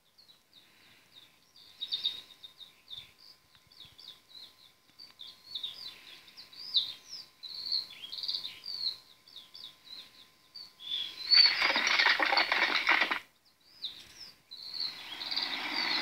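Birds chirping with many short, quick calls. About eleven seconds in, a loud rushing burst of noise lasts about two seconds, and a similar noise builds again near the end.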